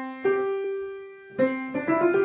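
Piano notes played one at a time in the middle register: a single note rings and is held for about a second, then further notes are struck near the end.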